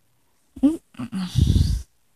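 A person's short 'ooh' that rises in pitch about half a second in, followed by a rough, low noise lasting about half a second near the end.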